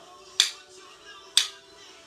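Wooden drumsticks struck together in sharp clicks, twice about a second apart, keeping the beat over background music.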